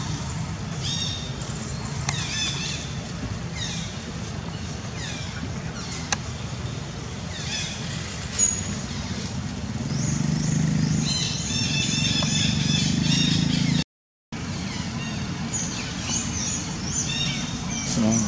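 Outdoor ambience of many short, high chirps sweeping downward in quick series, typical of small birds calling, over a steady low engine rumble that swells for a few seconds past the middle. The sound cuts out for an instant about fourteen seconds in.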